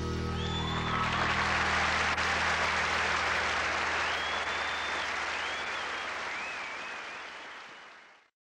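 Studio audience applauding at the end of a song, with a few whistles, while the band's last sustained chord rings out and fades in the first second or so. The applause tapers off toward the end.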